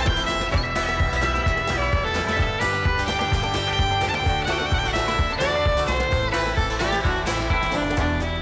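Instrumental break in a folk-rock song: a fiddle plays the melody over a band with a steady beat.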